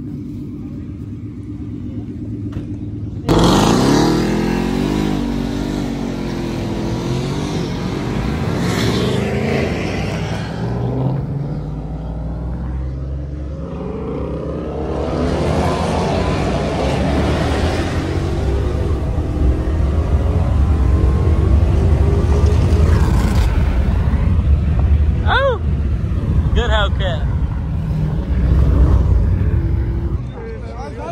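Car engine idling, then revving sharply about three seconds in, its pitch sweeping up and down. It settles into driving with a deep rumble that grows louder in the second half, heard from inside the car's cabin. Two short rising tones sound near the end.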